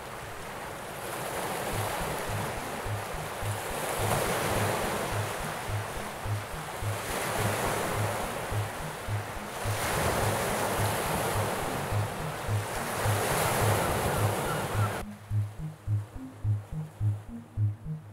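Sea waves washing in, swelling and falling about every three seconds, over background music with a steady low beat about twice a second. About fifteen seconds in, the waves cut off suddenly and only the music remains.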